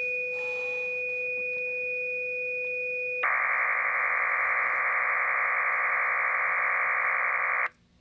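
FLDigi digital-mode transmission of a typed text message played through a computer's speakers: two steady pure tones, one low and one high, for about three seconds, then a louder, dense warbling band of data tones for about four and a half seconds that stops suddenly near the end.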